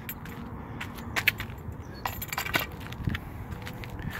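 Scattered light clicks and knocks as a pole with a PVC extender is handled and laid down on asphalt.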